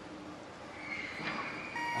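Hall background noise, then about 1.7 s in a steady electronic beep starts and holds: the competition attempt clock signalling 30 seconds left to lift.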